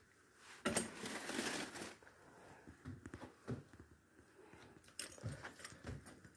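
Faint handling noises: a rustle lasting about a second, then a few light clicks and knocks.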